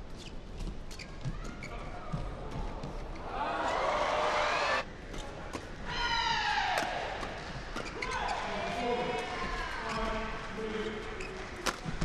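Badminton doubles rally: rackets striking the shuttlecock in short sharp cracks, and court shoes squeaking on the court mat, with a loud run of squeaks in the middle.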